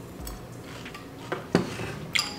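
Metal spoon and ceramic bowl clinking: two short knocks about a second and a half in, the second louder.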